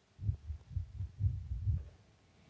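A quick, irregular run of muffled low thumps, about six in two seconds, with nothing bright or high in them.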